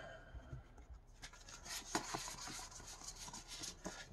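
Plastic tarot cards being slid and fanned apart by hand: faint rubbing with light ticks as card edges slip past each other, mostly from about a second in.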